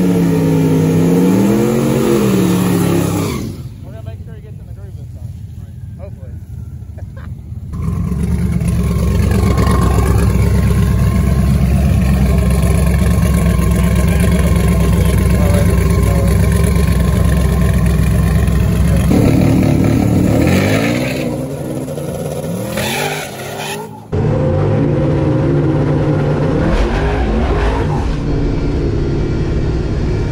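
Twin-turbo Camaro drag car's engine revving up and down, then idling with a steady loud rumble for about ten seconds. Near the end it revs in rising and falling blips before a sudden cut to a steady running note.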